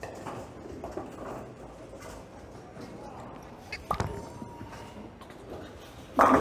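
Bowler's footsteps on the approach over a steady bowling-alley background, then a sharp thud about four seconds in as the Roto Grip RST X-2 bowling ball is released onto the lane, followed by a brief thin ring.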